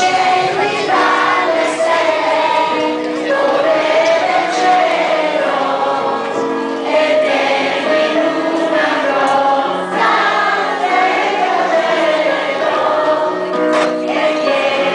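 Children's choir singing a song together, led by a conductor, with sustained notes that change pitch every second or so.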